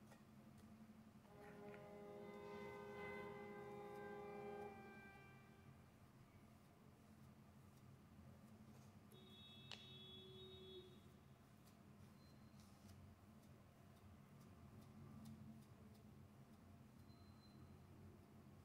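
Near silence: room tone with a steady low hum. A faint chord-like tone sounds for a few seconds near the start, and there are a few faint light clicks.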